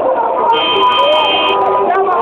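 A car horn sounds once, a steady tone held for about a second, over the continuous sound of voices.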